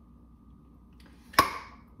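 A stiff lid on a glass jar of dill relish being twisted open by hand. After a quiet moment of effort, it breaks loose with a single sharp click a little over halfway through.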